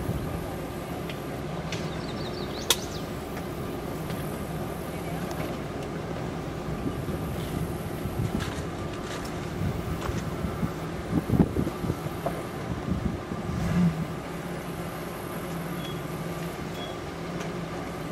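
Jeep Wrangler YJ engine running steadily at low revs as it crawls down a rocky trail, with irregular knocks and bumps of tyres and chassis over rocks, loudest a little past the middle, and a single sharp click about three seconds in.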